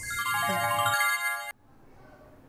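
Scene-transition sound effect: a quick downward cascade of bright chime-like notes that ring on together, then cut off suddenly about one and a half seconds in.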